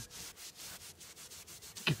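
Cloth rubbed briskly back and forth over a weathered teak bench, faint quick repeated strokes as teak oil is worked into the dry wood.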